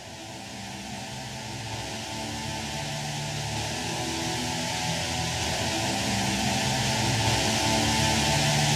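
Guitar music fading in, held chords growing steadily louder.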